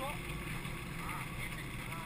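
Steady rolling rumble and rush of air from an unpowered gravity cart coasting downhill on an asphalt road.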